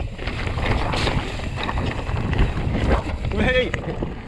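Mountain bike rolling over rocky singletrack: tyres rumbling and crunching on loose stones, the bike rattling over the bumps, with wind on the microphone. About three and a half seconds in, a brief pitched sound rises and falls over the rumble.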